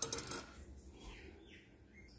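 A quick clatter of light clinks as a plastic bowl and food containers are handled, then quiet room tone with a couple of faint high chirps near the middle.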